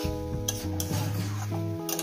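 Metal spatula stirring vegetables in an aluminium kadai, with a few short scrapes against the pan, over steady background music.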